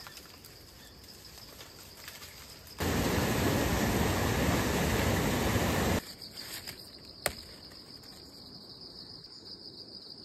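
Insects chirring steadily in a high thin band. About three seconds in, a loud, even rushing noise cuts in over it for about three seconds and stops abruptly, and a single sharp click follows about a second later.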